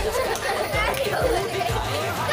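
Two young girls laughing and chattering indistinctly.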